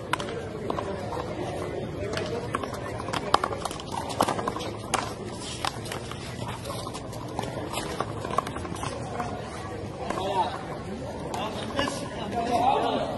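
Sharp, irregular slaps of a small rubber ball struck by hand and smacking off a concrete handball wall and the court during a rally, the loudest about a third of the way in, over background voices.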